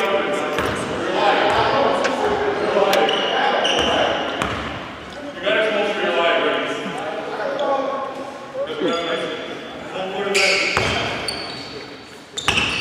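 Players' and referee's voices calling out in a large gym, with a basketball bouncing on the hardwood court.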